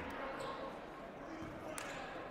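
Quiet basketball-gym ambience during a stoppage in play: faint, indistinct voices echoing in a large gymnasium, with one sharp knock near the end.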